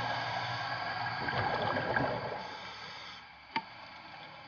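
Underwater recording of a semi-submersible tour boat moving below the surface: a steady hiss of water and bubbles with faint humming tones, fading toward the end. There is one sharp click about three and a half seconds in.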